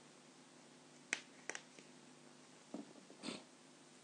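Near silence: room tone with two faint sharp clicks a little over a second in and a short soft rustle about three seconds in.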